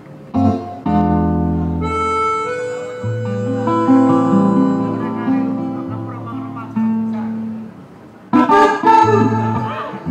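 Live instrumental intro on acoustic guitar with long held harmonica notes moving from chord to chord; near the end the guitar strumming grows busier and louder.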